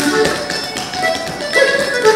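Irish traditional dance music on fiddle, a reel, with the taps of sean-nós dancers' shoes striking a wooden floor in quick, uneven beats across the music.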